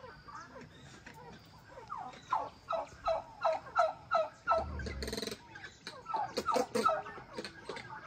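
Aviary birds calling: a run of about ten harsh, falling calls at roughly three a second, then a brief rustle and a few more calls near the end.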